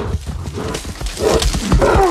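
An animal vocalising loudly over a run of heavy low thuds.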